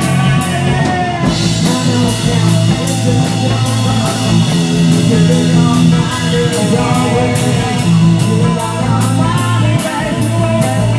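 Rock band playing: electric guitar, bass guitar and a drum kit keeping a steady beat, with a cymbal crash about a second in.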